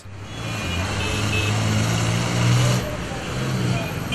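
Congested road traffic: many vehicle engines running under a steady hum and street noise, growing louder to a peak about two and a half seconds in, then easing off.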